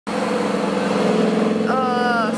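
Lamborghini Huracán Performante's V10 engine running at a steady, low engine speed as the car drives slowly past close by. A voice starts near the end.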